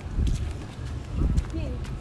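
A short voiced "hum" with a rising-falling pitch near the end, over a steady low rumble of outdoor wind on the microphone.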